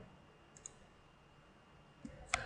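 Near silence with one short computer mouse click about half a second in.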